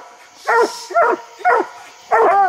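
Coonhounds barking up a tree: three short barks about half a second apart, the steady bark of hounds that have treed their game.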